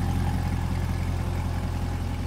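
2020 Corvette C8 Z51's mid-mounted 6.2-litre LT2 V8 idling steadily, a low even hum with no revving.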